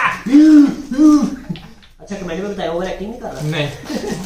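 People's voices: two drawn-out calls that rise and fall in pitch in the first second and a half, then a short pause and talk.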